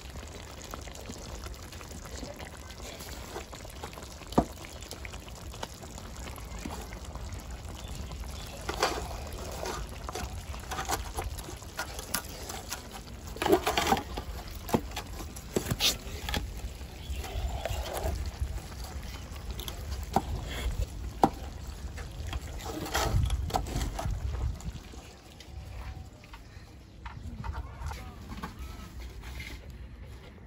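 A wooden spoon working a pot of thick, sticky fufu in an aluminium pot to get it to the right consistency: irregular wet squelches and occasional knocks of the spoon against the pot, over a low steady rumble.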